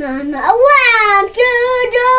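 Young boy singing loudly in a rock style, wordless held notes: a low note that swoops up in pitch about half a second in, then sustained higher notes broken by a short gap in the middle.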